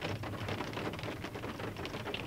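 Light rain pattering on the roof of a car, heard from inside the cabin as a steady, fairly quiet stream of fine irregular ticks.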